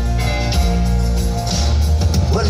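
Live band playing an instrumental passage between sung lines: grand piano and acoustic guitar over sustained low bass notes.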